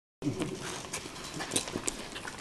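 A few scattered sharp clicks and knocks, about four, over a low rustle, with a brief murmur of a voice near the start.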